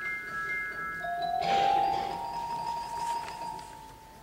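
Tinkling bell chimes that stand in for Tinker Bell's voice: held bell tones, then a brighter shimmering flourish about a second and a half in that rings on and fades.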